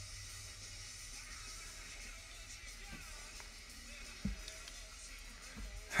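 Quiet room with a steady low hum and faint background music, and one soft knock a little after four seconds in.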